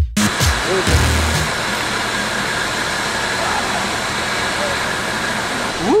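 Hip-hop backing track with deep bass notes in the first second and a half, then the steady rush of water pouring out of a dam spillway.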